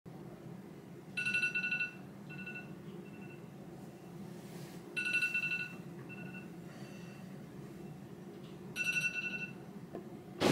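Smartphone alarm going off: a high electronic tone rings three times, about every four seconds, each ring under a second long and trailed by two fainter short notes, over a low steady room hum.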